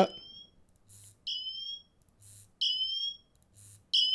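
Apple Watch Ultra's emergency siren sounding: a short high-pitched tone, rising slightly and lasting about half a second, repeated three times about every 1.3 seconds, with fainter short sounds in between.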